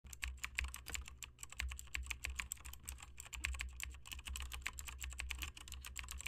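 Rapid, irregular light clicking, several clicks a second, over a faint low rumble.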